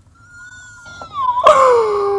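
A woman's drawn-out wordless vocal exclamation, an "ooooh", starting thin and high and sliding down in pitch. It turns suddenly loud about one and a half seconds in and keeps falling.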